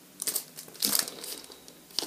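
Crinkling of a plastic record sleeve as a vinyl LP is handled, in irregular rustles, the loudest about a quarter second and about one second in.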